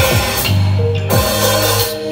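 Sonor drum kit played with felt mallets along to an electronic backing track that has a heavy, sustained bass and repeated kick-drum strokes.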